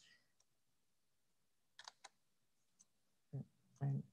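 A few faint, sharp clicks of a computer being worked, spaced irregularly around the middle, then two short, duller low sounds near the end.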